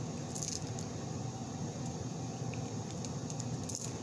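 Steady low room hum, with a few faint clicks and rustles from a small plastic lip gloss being handled, near the start and again near the end.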